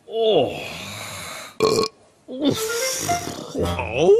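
Cartoon character burping: a long burp whose pitch drops at the start, a short loud burst about one and a half seconds in, then more throaty vocal noises, with background music.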